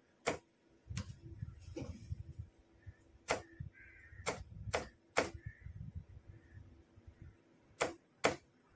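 Sharp mechanical clicks of the hand key that switches a Morse signalling lamp on and off, about eight at uneven spacing as dots and dashes are flashed, over a low rumble.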